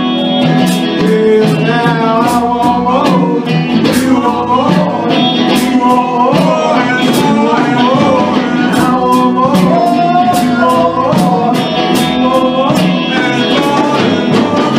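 Live band playing: drum kit, congas and electric guitar, with a melodic line bending up and down over a steady beat and regular cymbal strokes.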